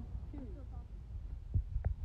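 Faint voices of people talking in the background over a low rumble, with a few low thuds on the phone microphone near the end.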